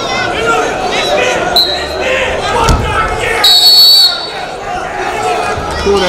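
Voices calling out in an indoor sports hall, with a single thud about two and a half seconds in as the wrestlers hit the mat. Then comes a shrill referee's whistle blast of under a second, the loudest sound, at about three and a half seconds in.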